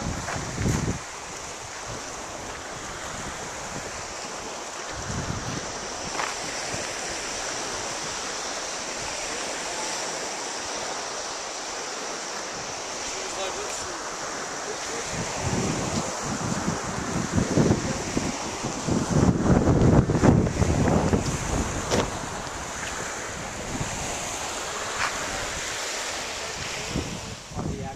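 Wind blowing across the camera microphone, a steady rushing noise with irregular low rumbling gusts that swell louder in the second half.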